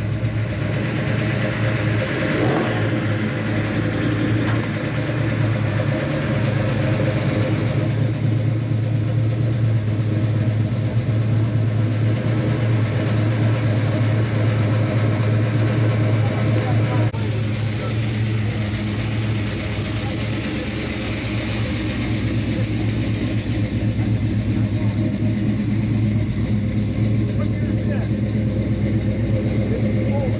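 Classic cars and street rods rolling past slowly in a line, their engines running at low speed in a steady low drone, with a brief rev now and then. The sound changes abruptly twice, about a quarter and halfway through.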